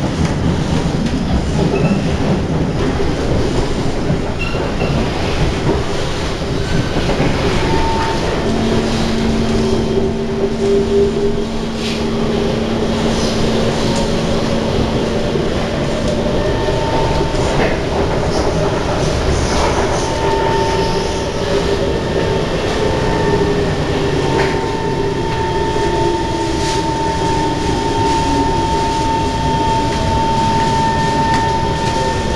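Inside an SMRT C151 metro train slowing into its terminus: a steady rumble of wheels on rail with clatter, and running tones that fall slowly in pitch as it decelerates. A steady high tone sets in over the last third.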